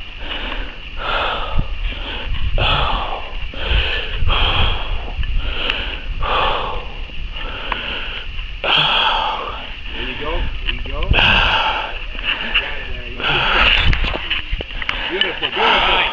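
A man breathing hard and fast right against a chest-mounted camera's microphone, in short noisy in-and-out gasps that repeat about once a second, from the strain of climbing and balancing on a tall pole. A low wind rumble on the microphone runs underneath.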